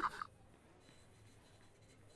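A man's laugh breaks off about a quarter second in, followed by near silence with only faint room tone.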